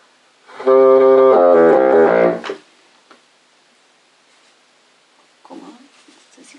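Bassoon playing a short warm-up phrase: a held note, then a quick run of notes moving in thirds and fourths, grouped in fours. Faint rustling near the end.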